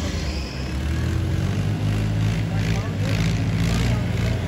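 Diesel engines of two Ghazi 480 tractors running hard and steady under heavy load as they pull against each other.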